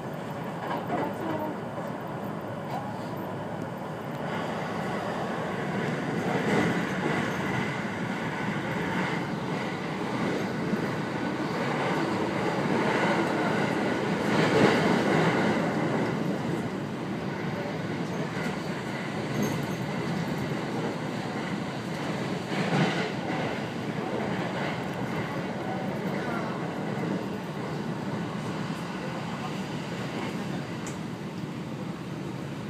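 Cabin noise of a JR West 521 series electric train under way: the steady running sound of wheels on rails, swelling to its loudest around halfway, with a sharp louder knock about two-thirds of the way through.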